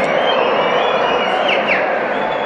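Massed crowd noise from thousands of football supporters filling a stadium, a steady dense din with thin high whistle-like tones over it and two short falling glides about a second and a half in.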